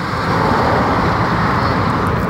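Steady road and wind noise heard from inside a car moving at highway speed: an even rush of tyres and air.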